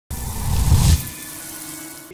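Intro sound effect under an animated logo: a rushing whoosh with a deep rumble that builds and peaks just under a second in, then cuts down to a quieter tail with faint steady tones that fades away.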